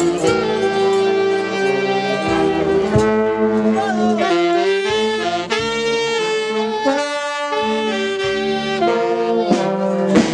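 Brass band playing a slow melody in long held notes, several wind instruments sounding together.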